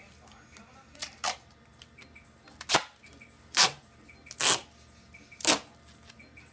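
Duct tape pulled off the roll in a series of short, loud rips, about one a second.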